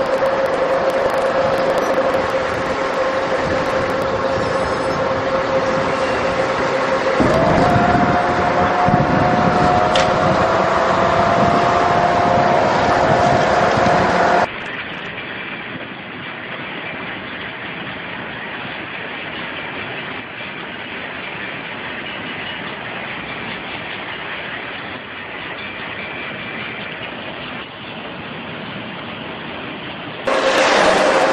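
Freight train rolling past a level crossing, a steady rumble of wheels on rail. In the first half a steady tone runs through it, joined about seven seconds in by a second, slightly rising tone. About halfway through the sound abruptly drops to a quieter, duller rolling rumble.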